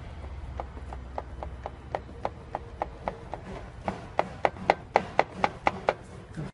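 A regular mechanical knock, about four sharp knocks a second, growing louder over the last couple of seconds, over a low hum.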